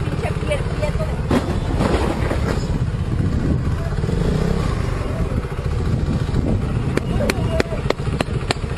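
Motorcycle running through traffic, heard from a camera on the bike as a steady low rumble, with several sharp clicks near the end.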